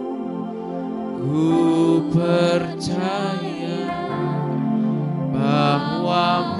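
Soft worship music: a Yamaha keyboard holding sustained chords while a solo voice sings long, sliding notes, swelling about a second in and again near the end.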